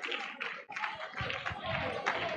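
Faint, scattered hand claps over quiet voices in the background.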